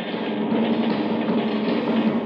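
Radio-drama sound effect of a passenger train running, a steady, even noise with a low drone.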